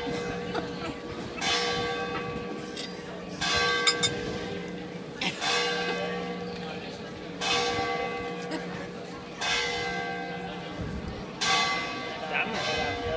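Church bell tolling slowly, about one strike every two seconds, each stroke ringing on and fading into the next over a steady hum.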